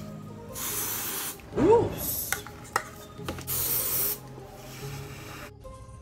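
An aerosol body spray can sprayed in two hissing bursts of just under a second each, about two and a half seconds apart, with a shorter puff between them. A short hummed note, rising then falling, comes between the first two sprays.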